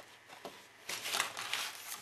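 A large sheet of 12×12 inch patterned scrapbook paper rustling as it is handled and laid down flat, starting about a second in after a few faint ticks.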